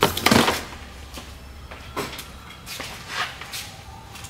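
Heavy cardboard boxes of firework cakes set down into a wire shopping cart: one loud thump in the first half second, then a few lighter knocks and rattles as boxes are shifted. A steady low hum runs underneath.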